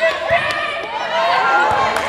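Girls' voices shouting and calling on a volleyball court, with a sharp smack of the ball being played about half a second in and another near the end.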